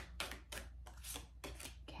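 A deck of tarot cards being shuffled by hand: a quick series of light card clicks, about four or five a second.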